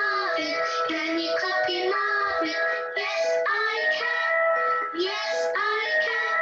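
A children's action song: a voice singing short, repeated phrases over musical accompaniment.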